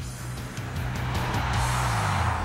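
Background music with the tyre and road noise of a Mercedes-Benz GLK350 driving past, the rushing noise swelling from about a second in.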